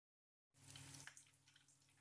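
Faint sizzling of semi-hot green peppers frying in oil in a pan. It starts suddenly about half a second in after dead silence, with a low steady hum under it.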